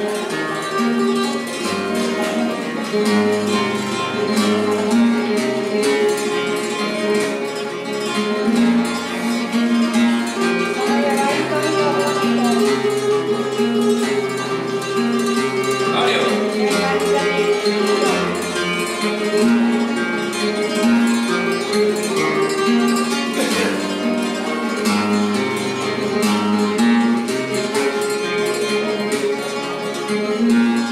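Flamenco guitar playing the introduction to a milonga: a plucked melody over moving bass notes, with two sharper accents, one about sixteen seconds in and one near twenty-four seconds.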